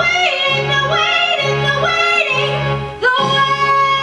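Female voice singing a show tune over backing music, with quick rising vocal runs, then about three seconds in a single long high note held steady.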